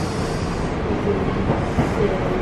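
Steady low rumble of a moving vehicle, with faint voices in the background.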